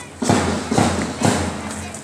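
Steady marching beat for a parade: four thuds about two a second, each one ringing briefly before the next.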